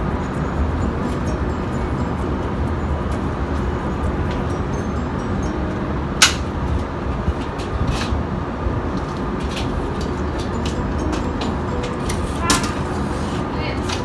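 Steady low rumble of wind and city traffic on a high-rise balcony, with a few sharp clicks from a sliding glass door being pushed back into place, the loudest about six seconds in.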